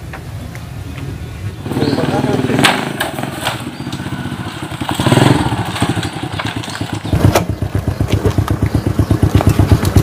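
Small underbone motorcycle engine running as the bike rides up close and stops, then idling with a quick, even putter that grows louder near the end.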